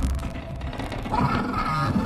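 Horror-film soundtrack: tense music and sound effects, a dense low rumble with short pitched tones that come in about a second in.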